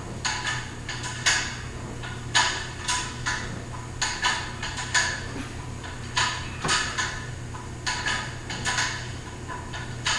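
Plate-loaded dumbbells clinking and rattling as they are curled, the plates knocking on the bar and collars in a string of sharp clinks every half second to a second.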